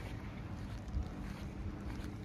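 Wind buffeting a phone's microphone during a snowfall: a steady low rumble that swells briefly about a second in.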